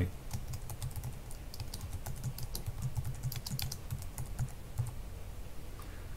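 Typing on a computer keyboard: a run of quick, irregular key clicks as a short phrase is typed.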